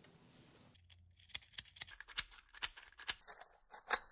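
A hand-held 3D-printed plastic scissor linkage being worked, its printed arms and pivot pins clicking and clacking. About a dozen irregular, sharp clicks begin about a second in.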